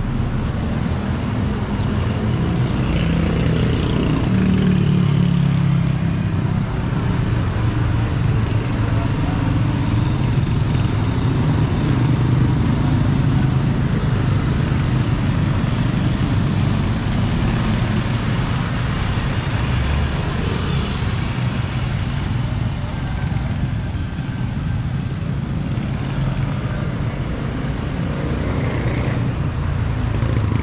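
Street traffic: motorcycle and tricycle engines running and passing by over a steady road rumble, with one vehicle passing close about four seconds in, its pitch falling as it goes by.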